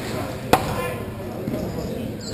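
A single sharp clack of a hockey stick-and-puck impact about half a second in, with a short echo from the rink hall, over the general din of play and players' voices.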